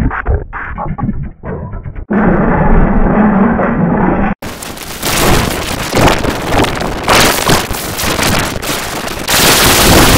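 Cartoon soundtrack mangled by heavy audio effects. It starts muffled and choppy, becomes a loud, steady buzz at about two seconds, and a little after four seconds turns into a harsh, loud, noise-like distortion that fills every pitch to the end.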